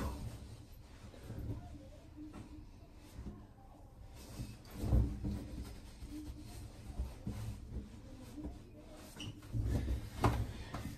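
Bath towel rubbing over a wet, freshly shaved head and face: faint cloth rustling with soft bumps, the loudest about five seconds in.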